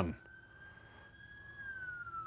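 A passing ambulance siren, faint, a single wailing tone that rises slowly and then starts to fall about three-quarters of the way through.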